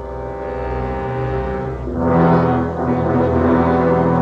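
Orchestral film score: low, sustained brass chords that swell louder and fuller about halfway through.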